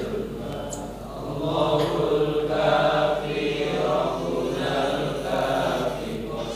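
A congregation of many voices chanting a dhikr together in unison, in long drawn-out sung phrases that swell and fade.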